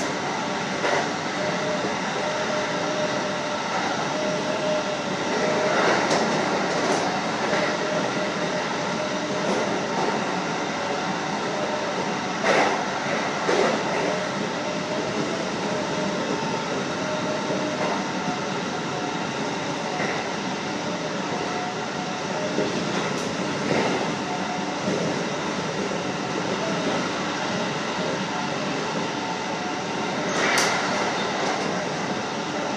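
JR 711 series electric multiple unit running at speed, heard from inside the front of the car: a steady rumble of wheels and running gear with a faint steady hum, broken by a few sharp knocks from the track.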